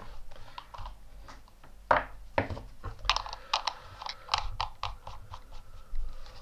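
Small metallic clicks and taps as a rebuilt CLT V3 dripping atomizer is picked up and screwed onto a black resistance tester for an ohm check. Two louder knocks come about two seconds in, then a quick run of light clicks.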